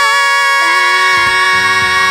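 A vocal trio holding a long sung note in harmony, with low accompaniment notes coming in about halfway through.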